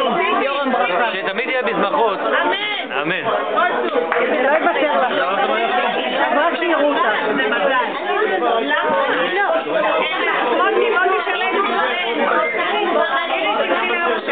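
Many people talking at once: continuous overlapping party chatter filling a room, with no single voice standing out.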